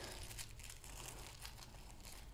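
Faint crinkling of tissue paper being unfolded by hand.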